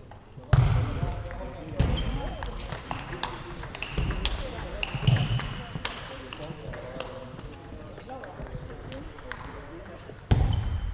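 Table tennis rally in a sports hall: sharp clicks of the celluloid ball off bats and table, with a few loud thumps of players' feet on the floor and short high squeaks of shoes. The rally ends partway through.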